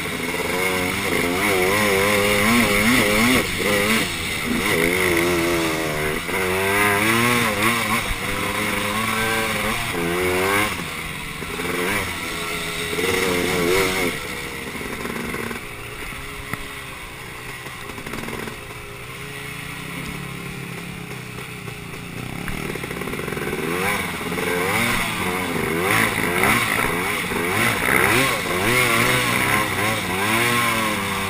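Honda TRX250R quad's two-stroke single-cylinder engine under way, its revs rising and falling again and again with the throttle. It eases off through the middle and pulls hard again near the end.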